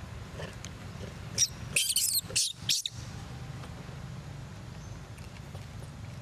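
Infant macaque squealing: four or five short, shrill, wavering cries in quick succession about a second and a half in, lasting about a second and a half.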